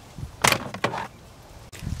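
Plastic steering-column shroud halves being pulled apart by hand. There is a sharp crack and scrape of plastic about half a second in, a second smaller snap just before one second, then quiet.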